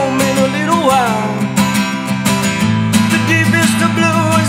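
Acoustic guitar strummed steadily in a live solo performance, with a man's sung note sliding down and trailing off in the first second or so.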